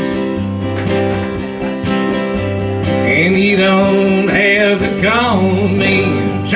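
Live country song on two strummed acoustic guitars with a bass note, and a man singing a held, bending line in the second half.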